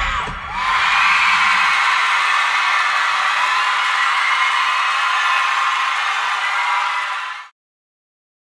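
A studio audience screaming and cheering in high-pitched voices as a pop song finishes, with the song's last sung note fading in the first moment. The cheering cuts off suddenly near the end.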